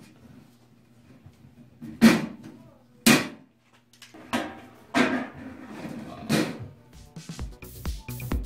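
Hand pop-rivet gun fastening a galvanized sheet-metal panel: several sharp metallic snaps and clanks spread over the first seven seconds, each with a short ring. Background music with a beat comes in near the end.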